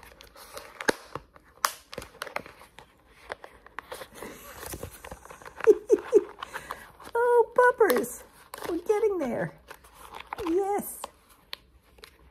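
Clear plastic cone collar crinkling and clicking as it is handled and worked open to come off a puppy's neck. A few short high-pitched vocal sounds, some falling in pitch, come in around the middle.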